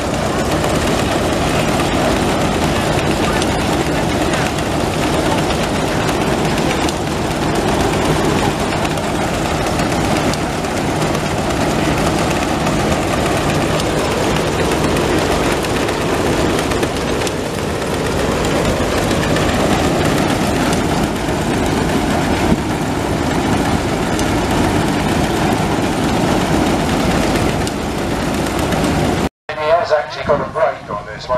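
Belt-driven threshing machine running: a steady low hum with continuous rattling clatter, which cuts off abruptly just before the end.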